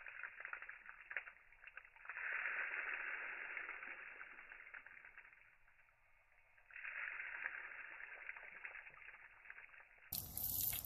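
Water flung out of a honeycomb frame as it is shaken, spattering onto pavement, heard slowed down with the slow-motion video: a faint, dull rushing hiss that surges about two seconds in and again near seven seconds, fading away after each surge.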